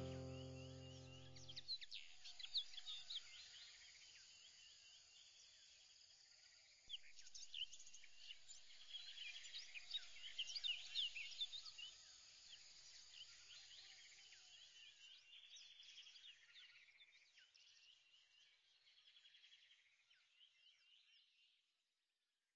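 Faint birds chirping, with many short, quick calls and whistles. They get livelier from about seven seconds in and fade away near the end. In the first two seconds a held music chord dies out.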